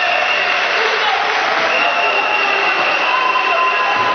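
Futsal crowd in a sports hall: a steady din of clapping and voices, with a few long held notes sounding above it.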